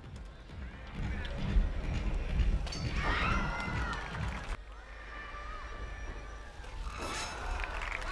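Voices over outdoor event sound, with low rumbling thumps through the first half.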